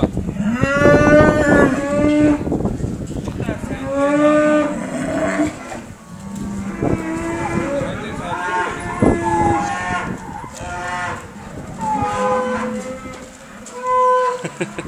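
Cattle mooing repeatedly, a string of long calls from several animals at different pitches, the loudest about a second in.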